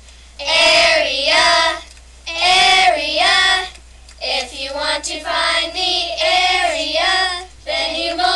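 Children singing a song about the area of a rectangle, in sung phrases of a second or two with short breaths between them.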